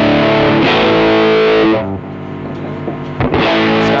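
Distorted electric guitar, a Squier Bullet Stratocaster with Kin's single-coil pickups on the middle-and-neck setting, playing held chords and notes. A little under two seconds in the sound drops to a quieter, fading ring, and a new chord is struck near the end.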